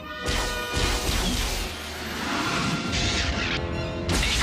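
Film sound-effect crashes in a space battle over background score music: a sudden loud crash about a quarter second in, and a second longer burst of crashing noise in the second half.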